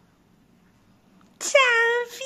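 Near silence, then about one and a half seconds in a loud, high-pitched, drawn-out vocal cry begins and carries on.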